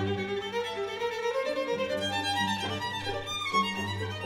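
Solo violin playing a concerto passage with a string orchestra, low cello and double bass notes sounding beneath it.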